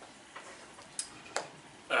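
A few light clicks from a small object being handled on a desk: a faint one, then two sharper ones about a third of a second apart. A man's brief "um" comes right at the end.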